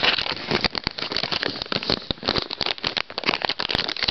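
Dog-treat packaging crinkling and crackling in the hands as it is opened, a dense, irregular run of crackles.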